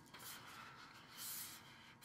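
Faint scratching of a graphite pencil making several short strokes on drawing paper, working on the paper's coarser wrong side.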